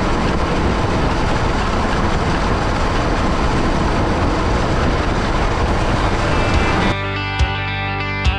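Farm vehicle running, a loud steady rumble with a hiss on top. About seven seconds in it cuts to rock music with electric guitar.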